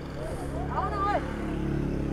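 An engine running steadily, with a person's voice calling out briefly about a second in.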